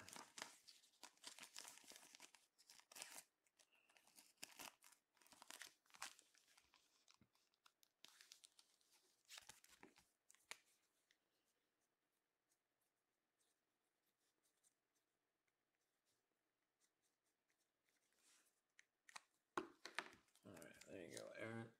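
Faint crinkling and rustling of clear plastic card sleeves as trading cards are handled and bagged, in short irregular bursts that die away about halfway through, with a few more crackles near the end.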